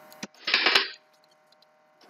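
A narrator's mouth click followed by a short breath in, about half a second long, then silence.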